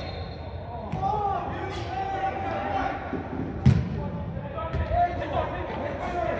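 Players' shouting voices in a large indoor soccer hall, with the thud of a soccer ball being kicked, one sharp strike about three and a half seconds in standing out as the loudest sound and a few lighter knocks around it.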